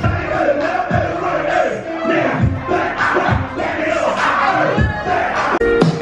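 Loud party music playing through a club sound system, with a low beat thudding about once a second, while a crowd shouts and sings along. The music drops out for an instant near the end.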